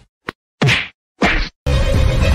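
Two punch sound effects, short sweeping whacks about two-thirds of a second apart, in a break in the background music. The music comes back near the end.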